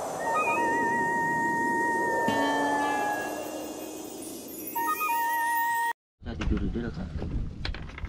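Produced intro sound: a swelling whoosh with steady whistle-like tones over it, ending abruptly about six seconds in. It then cuts to wind on the microphone and noise from a small boat on the water.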